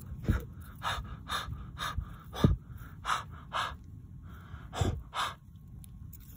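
Short puffs of breath blown repeatedly at a land hermit crab's shell to make the crab come out, about a dozen puffs at an uneven pace. A sharp bump from handling about halfway through.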